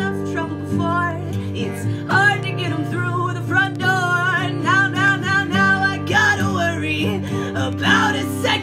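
A woman singing to her own strummed acoustic guitar. The chords run steadily underneath, and the voice comes in strongly about two seconds in with held, wavering notes.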